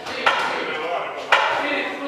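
Two sharp smacks of boxing-glove punches landing, about a second apart, over shouting voices.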